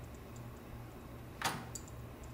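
Faint ticking over a steady low hum, with one short, sharp click about one and a half seconds in.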